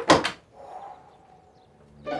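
An old wooden door banging shut right at the start, followed by the faint scrape of its metal latch being slid into place.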